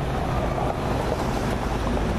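Steady low rumble of outdoor traffic noise, with wind buffeting the microphone.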